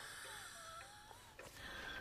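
Faint, wheezy breathing from an elderly woman, with thin wavering whistles in the breath over a low hiss.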